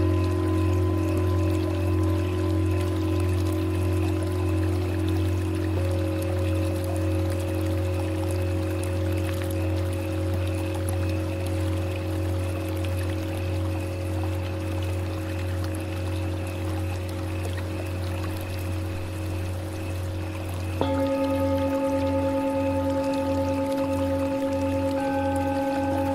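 Tibetan singing bowl meditation music: long, overlapping ringing tones held over a steady low hum. A fresh set of bowl tones comes in suddenly near the end, and the low hum starts to pulse.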